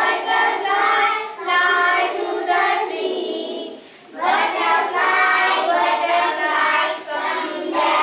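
A group of young children singing together in unison, with a short pause about halfway through.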